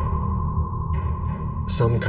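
Background documentary score: a low synthesizer drone under a steady, slightly pulsing electronic tone like a sonar ping. A man's narration begins near the end.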